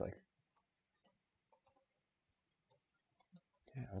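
A handful of faint, scattered computer mouse clicks, short sharp ticks spread through a near-silent pause.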